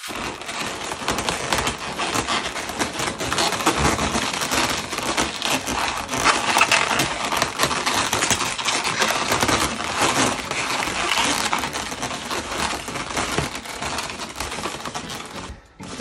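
Inflated chrome latex 260Q twisting balloons rubbing and crackling against each other as hands twist and tuck them into the leaf. The crackling is dense and continuous, then cuts off suddenly just before the end.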